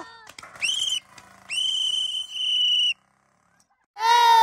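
Referee's whistle giving the game signal: a short blast, then a longer steady blast of about a second and a half.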